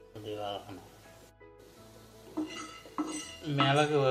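A metal spoon clinking and scraping against a pan as garlic cloves are scooped out, with a voice speaking over it.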